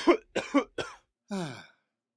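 A cartoon bee's voice coughing: a quick run of three or four short coughs, then a single voiced sound sliding down in pitch about halfway through.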